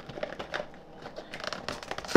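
Cardboard cereal box being opened by hand, its packaging crinkling and crackling in irregular bursts.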